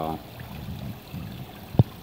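Water from an indoor pond's small rock waterfall and stream running as a soft, steady wash, with one short thump near the end.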